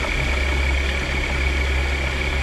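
C-130 Hercules's four turboprop engines running steadily, a deep drone with a steady high whine over it.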